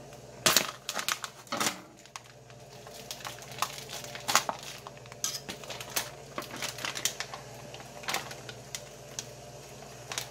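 Plastic food pouch of corned beef crinkling and rustling as it is handled and opened over an enamel pot, with scattered sharp clicks and knocks. The loudest knocks come about half a second in, again at about a second and a half, and near the middle.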